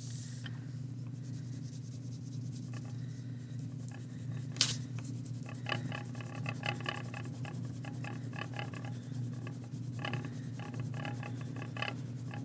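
Wax crayon scribbled back and forth on paper in fast, even strokes, about five a second, in two runs in the second half, over a steady low room hum. There is one sharp tap about halfway through.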